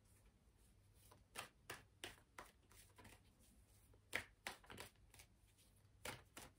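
Tarot cards being handled on a table: faint, short card clicks and slaps in two clusters, one starting a little over a second in and another about four seconds in.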